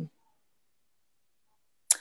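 Near silence: video-call audio cut to dead silence between speakers, with the tail of a spoken 'um' at the very start and a brief high-pitched tick near the end as the next voice comes in.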